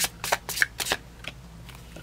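A deck of tarot cards being shuffled by hand: a quick run of soft card flicks and slaps in the first second, thinning out after that.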